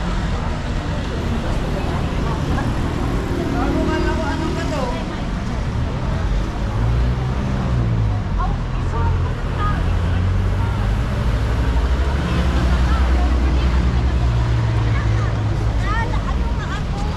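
Busy city street ambience: motor traffic running along the road, with snatches of passers-by talking. A vehicle engine's low drone grows stronger through the second half.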